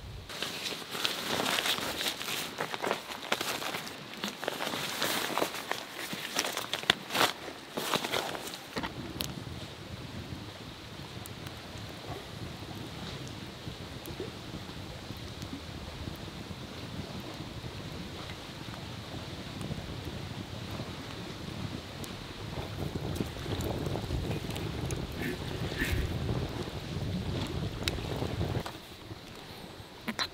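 Wind gusting and buffeting the microphone, with rustling and sharp clicks over the first nine seconds, then a steadier windy rumble that swells again near the end.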